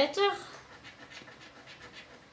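A scratch-off lottery ticket being scratched, a faint, quick, rhythmic rasping, after a spoken word at the very start.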